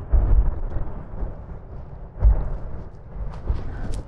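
Wind buffeting the microphone in uneven low gusts, strongest at the start and again just past two seconds, with a few light ticks near the end.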